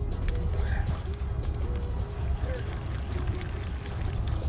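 Steady low rumble aboard a fishing boat at sea, with faint distant voices over it.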